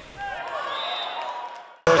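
Indoor volleyball arena ambience: faint distant voices of players and spectators echoing in the hall. It cuts off abruptly near the end as a man's voice starts.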